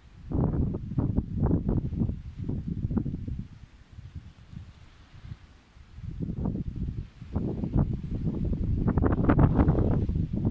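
Strong wind buffeting the microphone in gusts, a low rumbling roar. A gust hits just after the start, it lulls through the middle, then it builds again and is loudest near the end.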